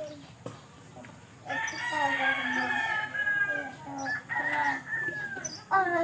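A rooster crowing: one long call of about two seconds, starting a second and a half in, followed by a shorter call about a second later.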